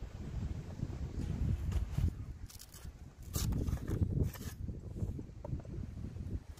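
Wind rumbling on the microphone, with three short scraping sounds a little under a second apart in the middle.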